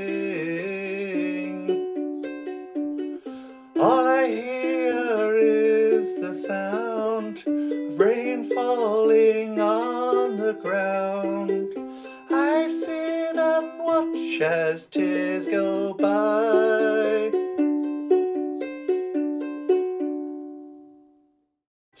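Ukulele finger-picked in a steady arpeggio pattern, with a man singing over it through the middle. Near the end the singing stops and the last picked notes ring out and die away to silence.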